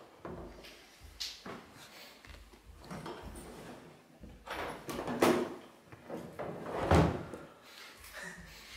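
Rummaging inside a hard plastic Hardcase drum case: scattered knocks and scrapes of the plastic shell and its contents, with the sharpest knocks about five and seven seconds in.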